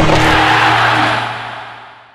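Logo sting sound effect: a loud hit trailing off into a long, airy wash with a low steady tone beneath it, fading out over about two seconds.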